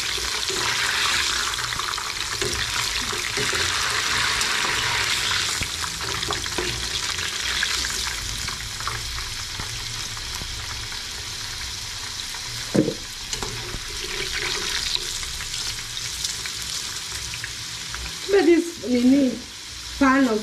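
Potato chips deep-frying in hot oil, a steady sizzle that is stronger in the first half and eases later, as they are turned with a metal slotted spoon. A single sharp knock comes about two thirds of the way through.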